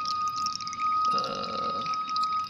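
Water gurgling and dripping in a fish tank, over a steady thin whistling tone.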